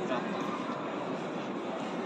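Steady ambient noise of a busy city square, an even rush with no distinct events.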